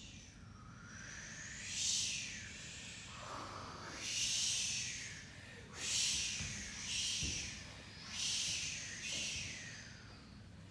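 Performers making breathy hissing, whooshing sounds with their mouths, in short bursts that come again every one to two seconds.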